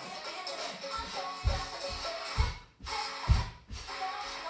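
Background music with a heavy bass beat, briefly dropping out twice in the second half.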